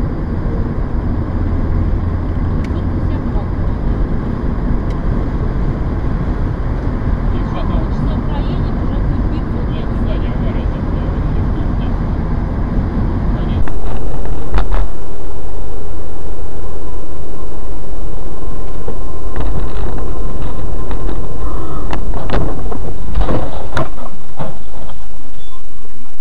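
Steady road and engine noise from a moving car. Just past halfway it changes abruptly to a much louder, rougher noise with scattered knocks and clicks.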